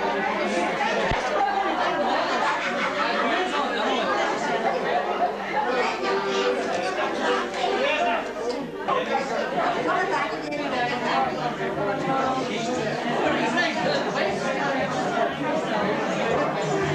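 Many people talking at once: steady, indistinct crowd chatter with no single voice standing out.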